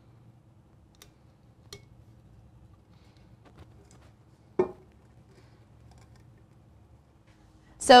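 Quiet handling noise as heat-resistant tape is pressed onto a paper-wrapped sublimation tumbler: a few faint clicks early on and one short, louder knock about halfway through, over a low steady hum.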